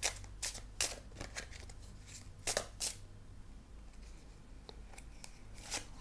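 A deck of tarot cards being shuffled by hand: a series of short, soft card slaps and riffles at uneven intervals, two of them louder near the middle.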